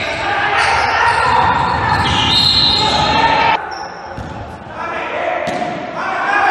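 Basketball game in an echoing gymnasium: the ball bouncing on the wooden court amid loud voices from players and spectators. A high steady tone lasts about a second from about two seconds in, and the noise drops off suddenly just after.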